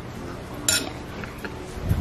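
Metal spoon clinking against glass while sugar is scooped from a glass jar into a glass mixing bowl: one sharp clink well under a second in, a few light ticks, then a duller knock near the end.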